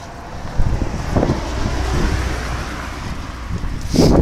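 Wind buffeting the microphone, a low rumbling noise that swells about half a second in and eases off near the end.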